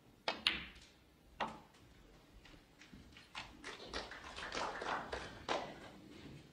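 Snooker shot: the cue strikes the cue ball, which clicks into the yellow about half a second in, and a single knock follows about a second later. Then come a couple of seconds of scattered faint clicks.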